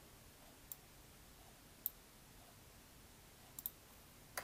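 A few sparse computer keyboard keystrokes against near silence: single clicks about a second in and near two seconds, then two quick clicks close together near the end.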